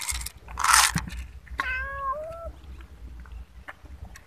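Dry cat kibble pouring from a canister and rattling into a plastic bowl in a short burst, then a cat meows once, a call of about a second.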